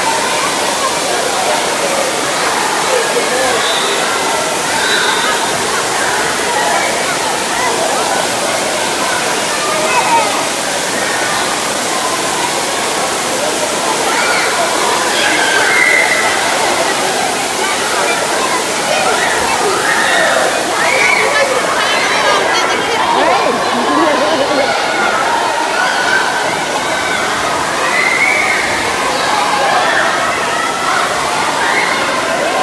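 Steady rush of water pouring from an indoor water park's spray features and splashing in the pool, with a din of many children's voices across the pool hall.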